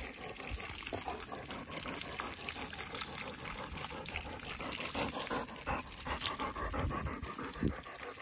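Garden hose spray nozzle running water onto a German Shorthaired Pointer's coat, a steady hiss with small splashes, while the dog pants.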